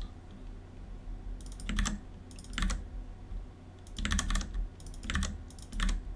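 Computer keyboard typing in short bursts of a few keystrokes each, with pauses between the bursts.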